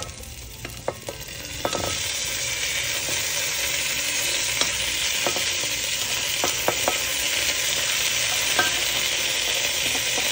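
Seared chicken pieces sizzling in hot oil as they are laid into an enamelled pot with garlic, onion and ginger; the sizzle swells up about two seconds in and then holds steady. A few sharp clicks of metal tongs against the pot and plate come through over it.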